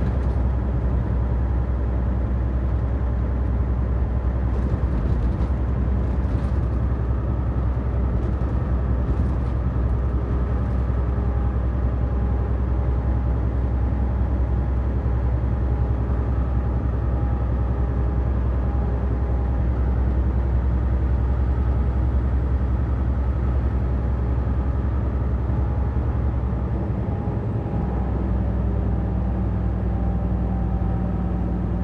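Truck engine and tyre noise heard inside the cab at highway speed, a steady low drone. The engine note changes briefly near the end.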